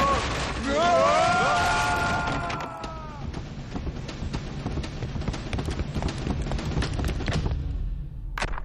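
Cartoon sound effects of an overloaded wooden floor giving way under the dinosaurs' weight. A drawn-out pitched sound rises and holds for about two seconds, then a long run of cracks and thuds over a low rumble follows, dying away near the end.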